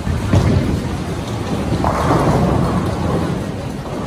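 Bowling alley din: a continuous low rumble of balls rolling down the lanes and pins being struck, with scattered sharp knocks and a louder swell about two seconds in.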